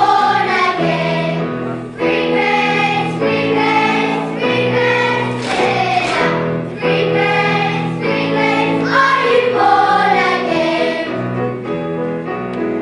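A choir of young children singing a song together, in continuous phrases over steady low accompanying notes.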